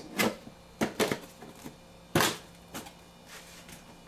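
Cardboard specimen box being closed and set down in a chest freezer: a series of short knocks and scrapes of cardboard and plastic, the loudest a little past two seconds in.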